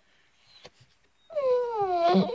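A dog "singing": one long howl that begins about a second and a half in and slides down in pitch.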